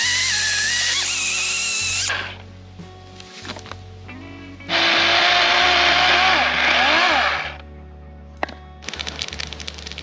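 Cordless electric chainsaw cutting through a dry, dead log for firewood, in two cuts of about three seconds each with a high motor whine, a quieter pause between them.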